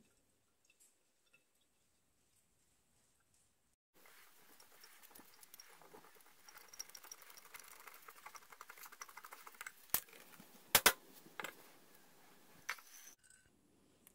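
Silicone spatula scraping and pressing thick blended pepper sauce through a mesh strainer into a glass jar: faint wet scraping and squishing that starts a few seconds in, after near silence. Two sharp taps come a little past the middle, under a second apart.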